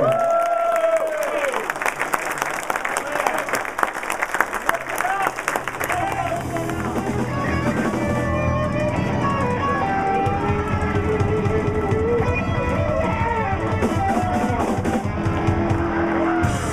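Audience applause and cheering for the first few seconds, then a live rock band comes in about six seconds in: electric bass, drums, electric guitars and keyboard playing together.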